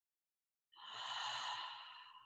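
A woman's long open-mouth exhale: a breathy sigh out through parted lips. It starts about a second in and fades away slowly.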